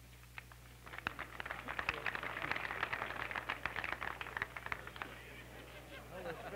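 Audience applauding: scattered claps about a second in swell to steady applause, then die away after about five seconds.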